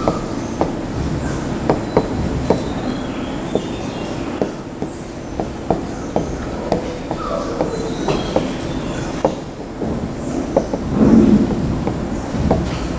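Stylus tip tapping and clicking irregularly on the glass of an interactive touchscreen display during handwriting, a few sharp ticks a second over steady low room noise. A brief louder low sound comes near the end.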